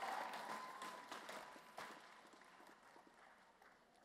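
Light scattered applause from the audience after a graduate's name is called, fading away within about two seconds into near silence.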